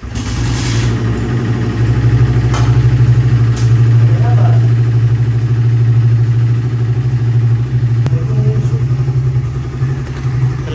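Suzuki Raider 150's single-cylinder four-stroke engine catching as soon as it is kick-started, then running at a steady idle that eases slightly about eight seconds in.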